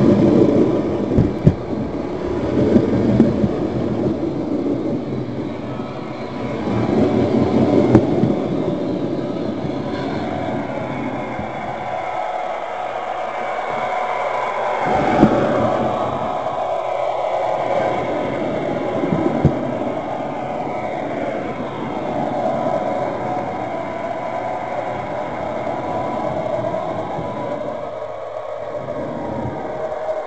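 Electric model-railway motor car running along the track, its motor hum and wheel rolling noise carried straight into the camera mounted on it by a magnet: a steady drone with a few sharp clicks.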